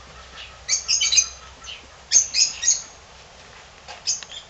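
Birds giving shrill chirping calls in two short bursts, about a second in and again about two seconds in.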